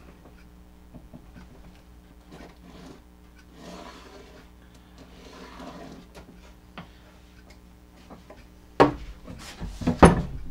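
Pencil scratching a marking line across a pine 1x12 board, faint, for a couple of seconds. Near the end a sharp wooden knock and scraping as the boards are shifted on the workbench.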